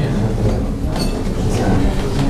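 Steady low rumbling noise in a meeting room, with a single sharp click about a second in.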